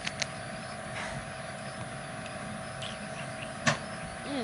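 Steady background hiss with a constant faint hum, broken by one sharp click near the end.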